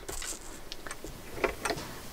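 Black cardstock being slid across a paper trimmer's base, a faint rustle with a few light ticks.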